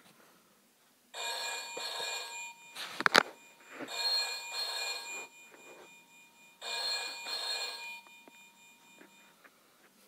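Electronic Deal or No Deal tabletop game playing a ringing-telephone sound effect through its small speaker, three rings of about a second and a half each: the banker's call with an offer at the end of a round. A few sharp clicks come between the first and second ring.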